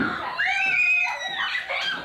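Young girls shrieking with excitement: one long high-pitched squeal, then shorter squeals.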